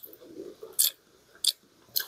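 A person slurping ramen noodles and chewing with a full mouth, with three short, sharp slurps.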